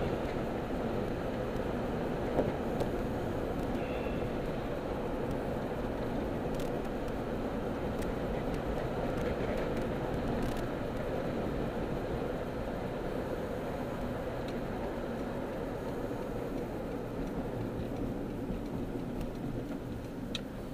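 Steady road and engine noise of a moving car heard from inside the cabin: an even rumble of tyres and engine with a few faint clicks, dropping a little in level near the end.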